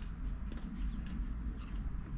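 Chewing with the mouth close to the microphone: faint, irregular crackles and mouth sounds from eating a crispy-crusted melt. A steady low rumble runs underneath.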